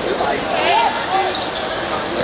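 Football thudding as it is dribbled and kicked on a hard court, with voices calling out from players and spectators.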